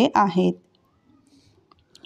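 A voice ends a word about half a second in, then near silence broken by a few faint clicks near the end.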